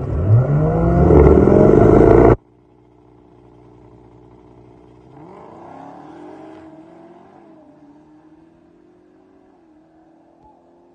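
Dodge Challenger SRT Demon's supercharged V8 revving hard as it launches off the line, its pitch climbing fast, then cutting off abruptly about two and a half seconds in. After that the engine is heard only faintly, rising in pitch again midway as the car pulls away down the strip.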